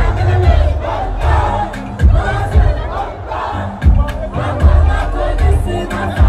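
A large concert crowd shouting and cheering, loud throughout, over amplified music whose heavy bass thumps come through underneath.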